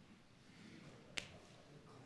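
Near silence: faint room tone, with one short sharp click a little over a second in.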